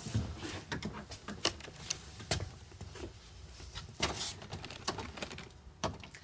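A door with a key stuck in its lock being worked at and forced, giving a string of irregular knocks, clicks and rattles.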